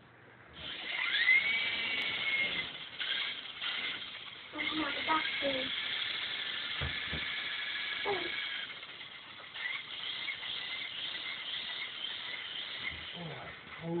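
Small electric motor and rotor of a toy RC helicopter running: a high whine that rises in pitch as it spins up about a second in, then holds steady with a hiss, dropping somewhat in level past the middle. Brief voices come in over it.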